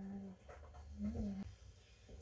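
A voice making two short, low hums, each about half a second long; the second, about a second in, rises slightly in pitch and then drops.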